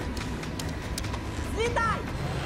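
Low, steady rumble of a cargo plane's engines in the hold, with a few sharp clicks as an intercom handset is taken off its wall mount. Near the end a woman starts shouting into it.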